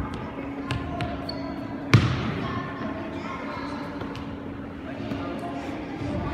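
Soccer ball thumping on a hard indoor floor as it is kicked and bounced: a few scattered thuds, the loudest about two seconds in, each with a short echo of a large hall.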